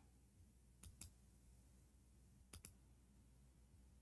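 Two pairs of faint, sharp computer mouse clicks, about a second in and again about two and a half seconds in, over near silence.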